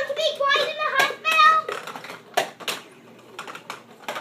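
Plastic ball-drop tower toy playing a short, high-pitched electronic tune, followed by a run of light plastic clicks and clacks as balls rattle down its ramps.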